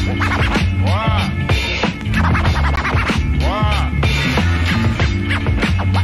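Hip hop beat with a DJ scratching a record on a turntable: quick back-and-forth scratches, with a longer rising-and-falling scratch sweep about a second in and another past three and a half seconds.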